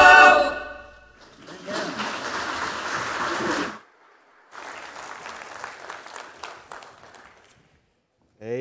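A choir's final held chord dies away in the first second, followed by congregational applause lasting about two and a half seconds. After a brief break come quieter rustling and scattered clicks as the choir members sit down.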